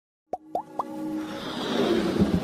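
Logo-intro sound effects over music: three quick rising pops, then a swelling whoosh that builds toward the end.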